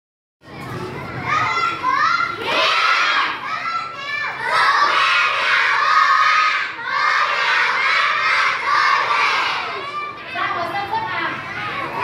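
A class of young children's voices raised together, many at once, loud and continuous from about half a second in, with a syllable-by-syllable rhythm.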